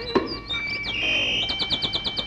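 Whistled birdsong of a cartoon nightingale: a sharp click near the start, a swooping whistle, then a quick run of high chirps, about eight a second, over a held high note.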